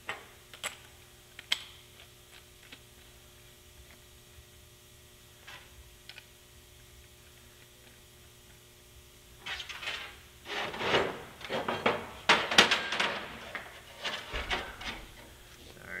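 Plasma torch head and its small metal consumables being handled on a steel welding table. A few sharp clicks come at the start, then a quiet stretch, then about six seconds of irregular rubbing, scraping and clatter as the parts are fitted.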